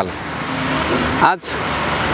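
Steady outdoor background noise, with a man's voice saying one short word about a second in.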